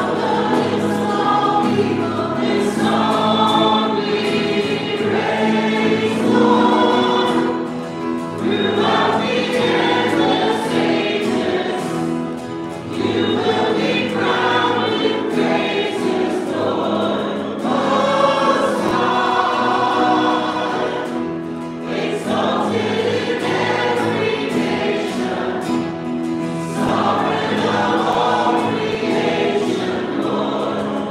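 A worship song sung by a group of voices to acoustic guitar accompaniment, the singing continuing without a break.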